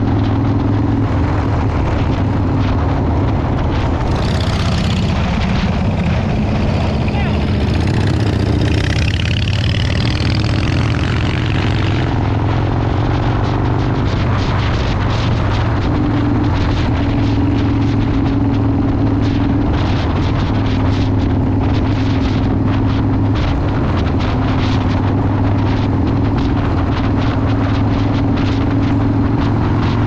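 Harley-Davidson Dyna Low Rider's V-twin running at a steady highway cruise, its engine note holding even, under heavy wind buffeting on the microphone.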